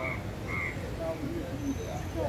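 Busy street ambience: a steady low traffic rumble and people's chatter, with short, high chirping calls twice near the start.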